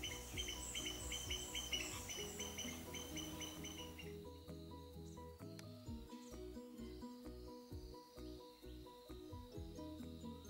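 Soft background music throughout, with a quick, even run of high chirps from red-vented bulbuls during the first four seconds or so.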